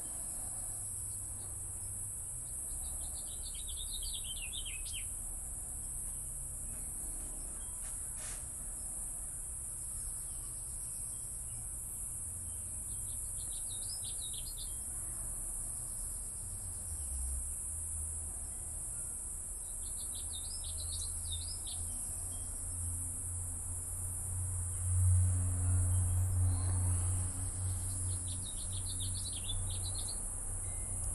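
A bird sings a short falling trill four times, about every eight seconds, over a steady high insect chorus of the cricket kind. A low rumble swells about 25 seconds in, and there is a single click about 8 seconds in.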